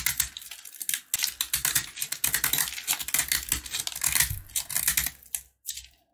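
A utility knife blade cutting into a dry, crumbly block of soap, making a rapid run of crisp crunching and scraping cuts. The cutting stops near the end, with one short last cut just before the end.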